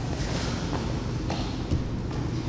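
Steady low background noise with a few faint soft taps as two grapplers shift against each other on a training mat.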